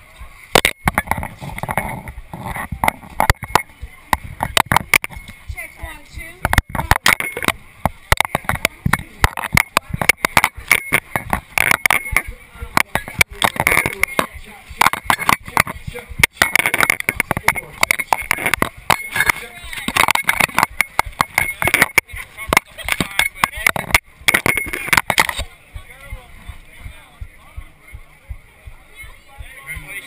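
Indistinct crowd chatter, overlaid by rapid, irregular, loud clicks and knocks that stop abruptly about 25 seconds in.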